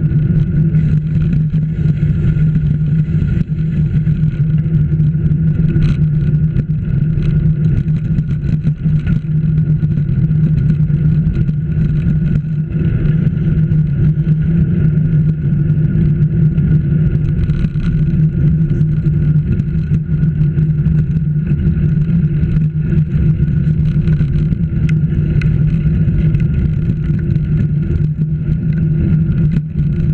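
A vehicle travelling along a road at steady speed: a constant low drone with road and wind noise underneath.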